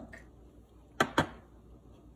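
Two sharp knocks a fraction of a second apart, hard kitchenware striking against a glass mixing bowl or the counter, about a second in.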